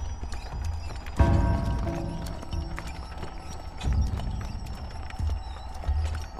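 Horses' hooves clip-clopping at a walk on a dirt road, with a music score underneath.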